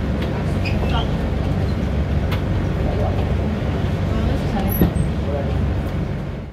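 Vallvidrera funicular car running, a steady low rumble, with a short knock about five seconds in.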